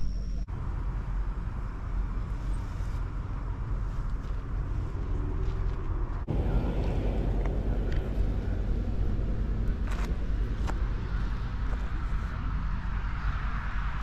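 Outdoor roadside ambience: a steady low rumble with the noise of road traffic. The sound changes abruptly about half a second in and again about six seconds in.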